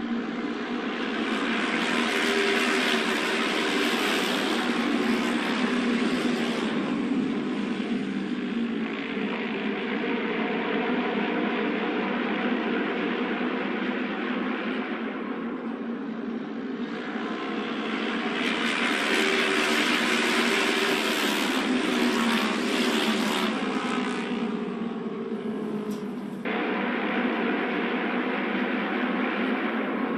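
Engines of auto race motorcycles lapping an oval track in a steady, dense drone. The drone swells twice as the bikes come round, then switches abruptly to a steady engine sound near the end.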